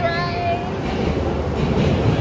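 Ride vehicle on a dark ride rumbling and rattling along its track, with a steady hum underneath. A held voice sounds briefly in the first moment.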